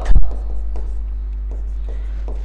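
Faint chalk scratching on a chalkboard as a hand writes, after a short low thump at the very start.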